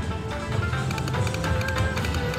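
River Dragons slot machine's free-spin bonus music playing while the reels spin and land.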